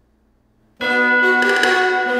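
A bell-like instrument sound, with many held tones ringing together, played back through studio monitors; it comes in suddenly just under a second in after a faint tail.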